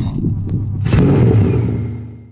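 Sound effect for an animated channel logo: a loud, deep sound with a click about half a second in and a sharp whoosh about a second in, settling into a held low tone that starts to fade near the end.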